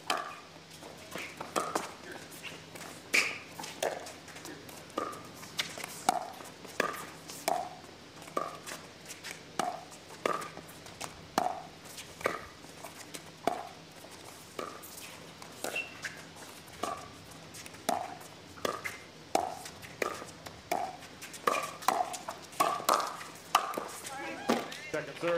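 Pickleball paddles hitting the plastic ball back and forth through a long rally, each hit a short hollow pop with a slight ring, about one every half-second to second. The hits come faster in a quick exchange near the end.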